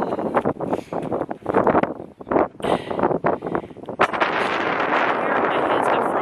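Strong wind buffeting the microphone, gusty and uneven at first, then a steady heavy rush from about four seconds in.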